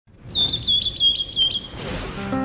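Cartoon bird-tweet sound effect: a high, chirping whistle in about four quick bursts, fading out just before the two-second mark.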